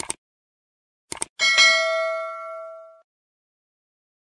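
Subscribe-button sound effect: short clicks at the start and a quick double mouse click about a second in, then a bright bell ding that rings with several pitches and fades over about a second and a half.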